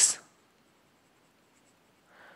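Faint scratching and light ticks of a stylus writing on a pen tablet, otherwise near silence.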